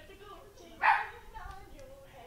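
A dog barks once, briefly, about a second in, over faint background voices.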